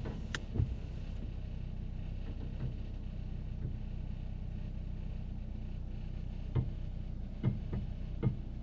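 Car engine idling steadily, a low even hum heard from inside the cabin, with a few short soft knocks near the start and again near the end.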